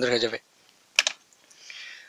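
A single sharp click about a second in, then a brief soft rustle.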